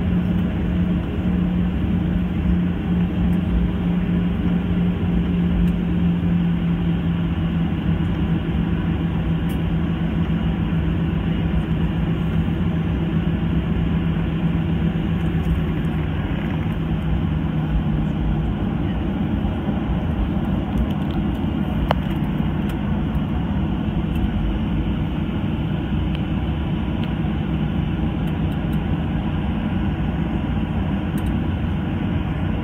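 Steady cabin noise of a Boeing 737-800 taxiing, its CFM56-7B engines running at low taxi power. A low hum slowly sinks in pitch and fades out about two-thirds of the way through.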